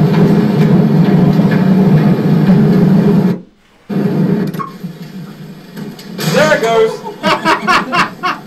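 Soundtrack of a handheld phone video playing back: a loud, steady low rumble of background noise that drops out for about half a second some three and a half seconds in, then comes back quieter, with voices near the end.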